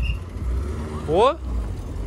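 A voice calls out once about a second in, rising steeply in pitch, over a steady low rumble.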